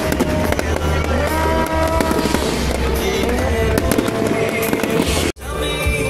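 Aerial fireworks crackling and popping in rapid, dense bursts over loud music. The sound breaks off abruptly for a moment near the end.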